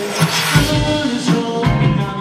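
Live band performance: a male vocalist singing over keyboard and drum kit, with deep kick-drum thumps about half a second in and again near the end.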